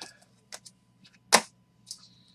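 Hard plastic card cases clicking against each other and the tabletop as they are handled and stacked, a few separate clacks with the sharpest about a second and a half in.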